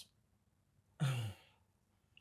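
A person sighs once, about a second in: a short breathy exhale whose low voiced part falls in pitch.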